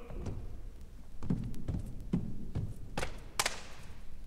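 Feet on a stage floor: a run of about five soft thumps, then two sharper knocks near the end.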